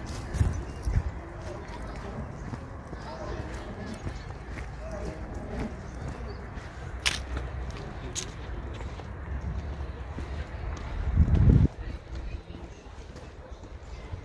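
Outdoor ambience of faint distant voices and scattered footsteps on a paved path, over a low rumble of wind on the microphone. A louder low rumble comes briefly about eleven seconds in.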